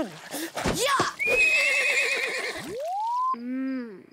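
Cartoon horse whinnying in a bath: a wavering, high-pitched call lasting about a second and a half. Near the end comes a separate sound that rises in pitch and then falls.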